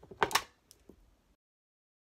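Two sharp plastic clacks about a quarter second in, then a couple of lighter taps, from an eyeshadow palette and makeup tools being handled and set down. The sound then cuts off to dead silence a little over a second in.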